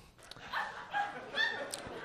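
A pause with a few faint, short, high-pitched vocal sounds from around half a second in to near the end.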